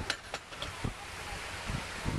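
Wind buffeting the microphone in uneven gusts, with a couple of small clicks just after the start.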